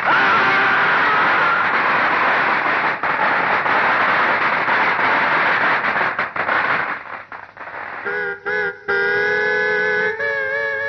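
A firecracker garland going off on a person in a rapid, continuous crackle of exploding crackers for about seven seconds, thinning to a few last pops. Music with held notes comes in near the end.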